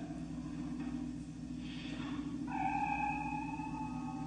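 Soundtrack of a TV episode clip played through the hall's speakers: a steady low hum, with sustained eerie tones coming in about two and a half seconds in.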